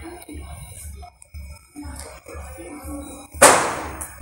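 Faint background music with a steady low pulse, then about three and a half seconds in a single loud firecracker bang that fades over about half a second.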